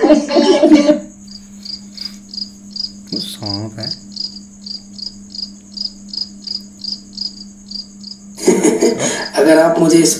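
Cricket chirping at night, an even rhythm of about three high chirps a second over a steady faint hum. A brief wavering sound cuts in about three and a half seconds in.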